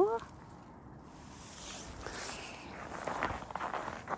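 Footsteps crunching on snow, building up over the second half and loudest near the end.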